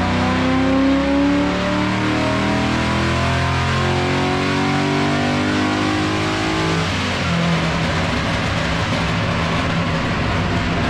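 Holden Commodore VE SS's LS V8, fitted with race exhaust pipes, on a chassis dyno power run: the engine note climbs steadily in pitch for about seven seconds as it pulls through the revs, then the throttle closes and it drops to a lower, steadier note.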